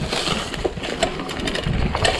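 Mountain bike rolling down a rough dirt trail: steady clattering and rattling of the bike over roots and dry leaves, with tyre crunch and many small knocks.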